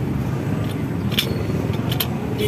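Steady low rumble of street background noise, with two light clicks a little past the middle from the aluminium casement's multi-lock handle being worked.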